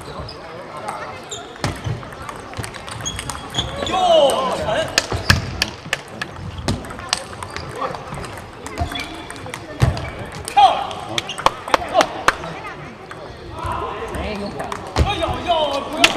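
Table tennis ball clicking off the paddles and the table in quick exchanges, coming in several runs of sharp clicks. Voices speak at intervals in between.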